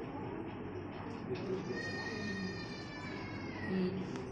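Newborn baby's first cry just after birth: one long wail starting just over a second in, easing down in pitch near the end.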